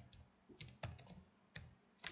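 Faint keystrokes on a computer keyboard: a short run of irregular taps as a word is typed.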